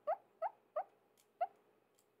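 A woman's quiet, high-pitched laughter: four short squeaky giggles, each rising in pitch.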